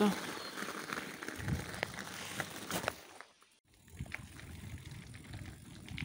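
Loaded bicycle rolling along a crushed-stone gravel path: tyres crunching over the stones, with small rattles and ticks from the bike and its bags. The sound drops out for about half a second just past the middle.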